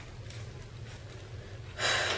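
Quiet room tone during a pause in talk, then a quick intake of breath near the end.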